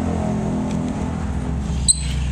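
Yamamoto 1500-watt petrol generator's small engine running steadily, with one sharp click near the end.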